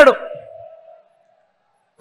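The last syllable of a man's voice through a public-address system, followed by a faint ringing tone that fades out within about a second, then silence.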